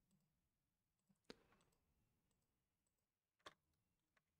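Near silence with two faint, short clicks of a computer mouse, one about a second in and one near the end.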